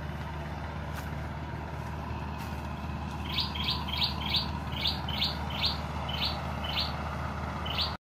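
A small bird calling a run of about a dozen short, high chirps, two or three a second, starting about three seconds in, over a steady low hum.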